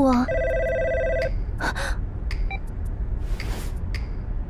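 Mobile phone ringing: one warbling electronic ring about a second long, just after the start, followed by a few short soft noises.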